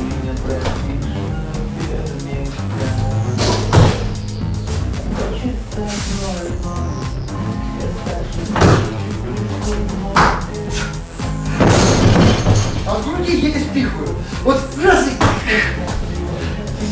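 Loaded barbell with bumper plates set down hard onto the gym floor after a clean and jerk. It lands as a loud crash about twelve seconds in, followed by a few smaller thuds, with single thumps from the lift earlier. Background music plays throughout.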